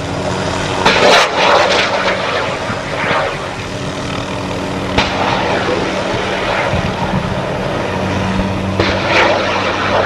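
Light helicopter (MD 500-type) flying low and close, its rotor and turbine running steadily, with the sound swelling about a second in and again near the end as it passes.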